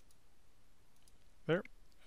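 A few faint computer mouse clicks while logging out of the application, then a brief voiced mouth sound from the presenter about one and a half seconds in.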